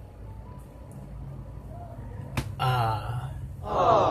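Dialogue from a Vietnamese drama playing back, over a low steady hum. There is a sharp click a little over two seconds in, and a louder spoken line near the end.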